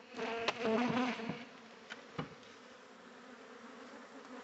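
Honeybees buzzing close by, strongest in the first second and a half and then faint, with a couple of sharp knocks from the wooden hive boxes as the hive is opened.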